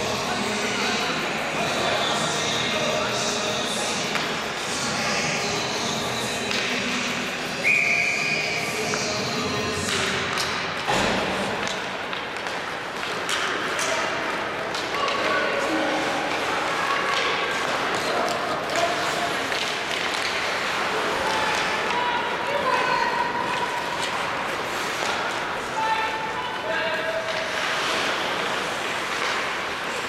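Ice hockey game in a large, echoing arena: players' voices calling, with pucks and sticks knocking against the boards and ice. A short shrill whistle sounds about eight seconds in.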